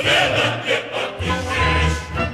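Opera chorus singing with orchestra, a low bass line coming in a little over a second in.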